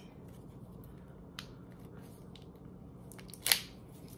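Hands handling and opening the packaging of a volumizing spray bottle: faint small clicks and rustles, a short tick a little over a second in, and a sharper crackle about three and a half seconds in.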